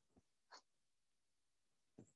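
Near silence: room tone, with one faint short tick about half a second in.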